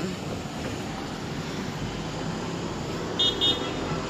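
Steady street traffic noise, with two short high-pitched car-horn toots a little after three seconds in.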